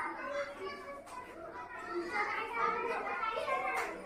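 Several children talking and calling out at once, an indistinct overlapping chatter of young voices. A single sharp tap sounds just before the end.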